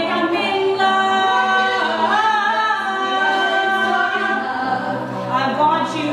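Mixed a cappella group singing live: backing voices hold sustained chords under a female lead singer at a microphone, whose line bends and wavers about two seconds in.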